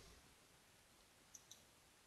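Near silence with two faint clicks close together about a second and a half in, typical of a computer mouse being clicked while navigating a 3D model on screen.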